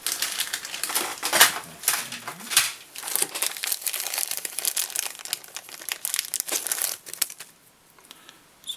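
Plastic packaging crinkling and rustling, with light clicks, as a silver cone head is picked out for a tube fly; it goes quiet shortly before the end.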